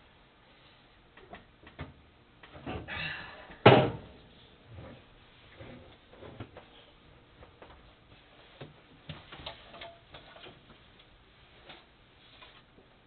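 Front roller of a GS-X pinsetter's short pit being lifted out of its seat: scattered knocks and rattles, a short scraping rush, then one loud clunk a little under four seconds in as the roller pops out, followed by lighter knocks.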